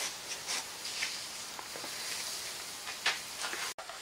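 Faint clicks and rubs from parts being handled on a workbench over a steady background hiss.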